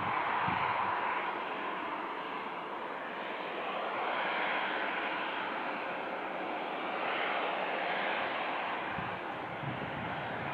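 Embraer E190's General Electric CF34 turbofans running at idle, a steady jet rush that swells and eases slightly.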